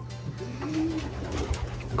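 Racing pigeon cooing: one low coo that rises and falls about half a second in, over a steady low hum.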